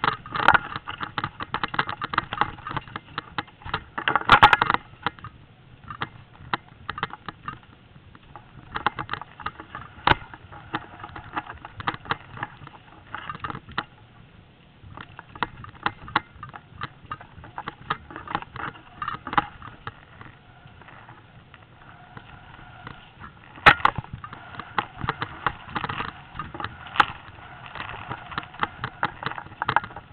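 Mountain bike rattling over a rough forest trail at speed: a dense, uneven run of knocks and clicks from the bike and camera, with a heavier jolt about four seconds in and another about two-thirds of the way through.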